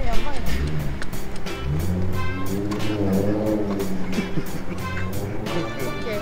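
Motorcycle engine revving sound, its pitch gliding up and falling back several times, with a long held rev through the middle. Background music with a steady beat plays under it.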